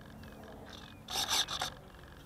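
Handling noise on a small action camera: a hand rubbing and scraping against the camera and its mount, in a couple of short scratchy bursts a little after a second in.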